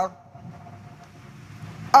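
A short pause in amplified speech filled with low, steady background room noise and a faint held tone that fades out about a second in. The speaking voice returns near the end.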